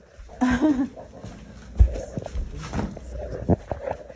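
A dog heard among scattered knocks and thumps on a hardwood floor, the loudest about two seconds in and another shortly before the end.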